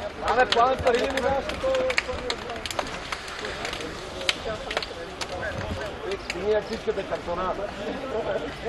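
Men's voices talking and calling out on an open pitch, with scattered sharp slaps of hands as the two teams high-five and shake hands before kick-off.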